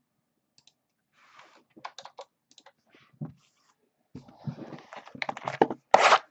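Irregular small clicks and taps from hands working at a table, sparse at first and growing denser and louder in the second half.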